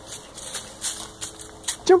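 Dry autumn leaves crackling and rustling under a toddler's steps on a trampoline mat: about five short, scattered crunches. Someone says "jump" just before the end.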